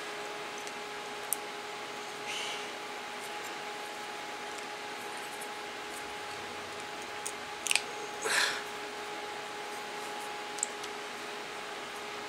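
Light clicks and brief rustles of small pieces of thin sheet steel being handled, over a steady background hum with a faint steady tone.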